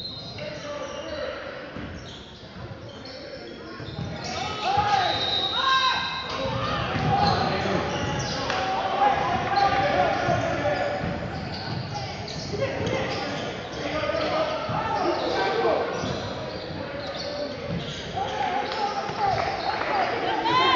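A basketball dribbled and bouncing on a hardwood gym floor during play, with players and the bench calling out, all echoing in a large gym. The sound gets louder about four seconds in.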